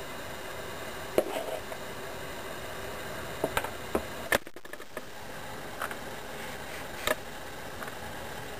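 A few light knocks and clicks of a spoon and a mixing bowl being handled and set down on a cutting board, the sharpest about four and a half seconds in, over a steady background hum.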